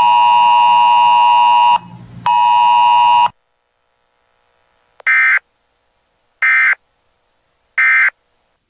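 A steady electronic buzzer tone for about two seconds, a brief break, then another second of it. After a pause come three short, identical bursts of data tones, evenly spaced: the Emergency Alert System end-of-message signal closing the weather radio broadcast.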